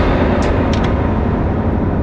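A loud, steady rumbling noise with a few faint clicks in the first second.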